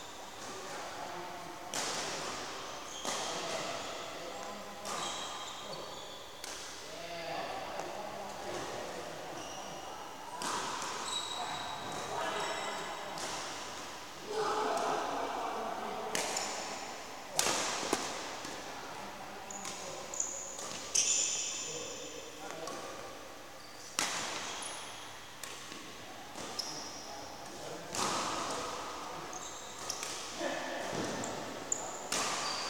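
Badminton racket striking shuttlecocks over and over, a sharp hit every one to three seconds, echoing in a large hall. Short high squeaks come between the hits.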